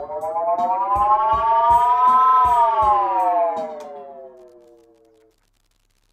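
Roland RE-201 Space Echo tape delay in self-oscillation: a siren-like feedback tone rises in pitch for about two seconds, then slides back down as the echo's knobs are turned. The Korg KR-55 drum machine's beat thumps underneath for the first few seconds, then the tone fades and cuts off abruptly about five seconds in.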